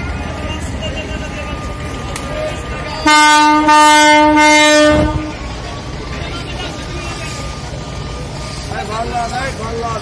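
Passenger launch's horn sounding one long steady blast of about two seconds, starting about three seconds in, over a low rumble and scattered voices: the signal of the launch leaving the ghat.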